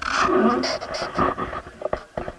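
A person's loud voice.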